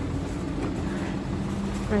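A steady low mechanical hum with a constant pitch, over a background hiss.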